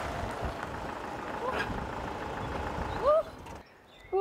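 A Citroën minivan driving slowly over gravel: engine running and tyres crunching on the stones, with two short rising voice calls, the second and louder one about three seconds in. The sound cuts off suddenly just after.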